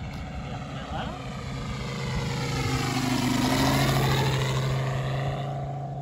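Large-scale radio-controlled F4U Corsair with a Moki 215 five-cylinder radial petrol engine flying a low pass. The engine and propeller sound grows to its loudest a little past halfway, dropping in pitch as the plane goes by, then fades.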